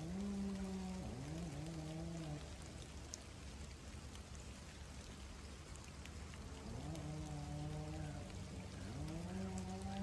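Steady rain falling, with a slow melody of long held low notes drifting over it, heard near the start and again in the last few seconds, as from soft background music.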